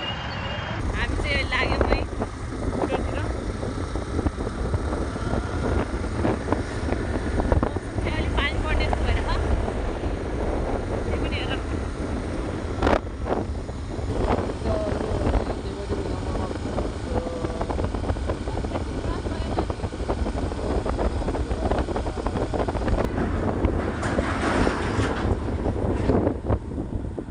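Steady rumble of motorcycle traffic with wind buffeting the microphone, and voices in the background. A few short, higher-pitched sounds stand out, about 2, 8 and 11 seconds in.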